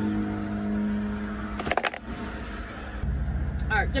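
Steady low vehicle engine hum heard from inside a stopped car, with a short sharp rustle or click about halfway through and a louder low rumble in the last second.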